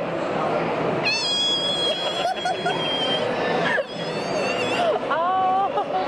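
A dog whining: one long, steady, high-pitched whine lasting about two seconds, starting about a second in, with a shorter, lower call near the end. Crowd chatter runs underneath.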